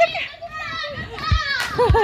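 Young children's high-pitched voices shouting and squealing at play, with no clear words, and two low thumps in the second half.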